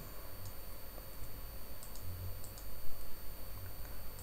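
A few scattered clicks from a computer keyboard and mouse as code is entered, one of them sharper about three seconds in.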